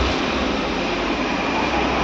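Steady rushing background noise with a low rumble that swells near the start and again near the end.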